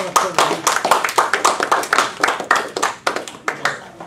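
A small audience clapping: a few seconds of dense, irregular handclaps that die away near the end.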